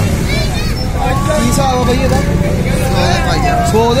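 People talking at close range over a steady low rumble.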